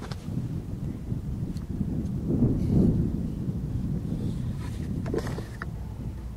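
Wind buffeting the camera microphone: an uneven low rumble, strongest about halfway through, with a few light clicks near the end.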